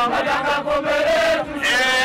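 A group of football supporters chanting a song together in unison. The chant holds one long drawn-out note through the middle, then quick rhythmic syllables start again near the end.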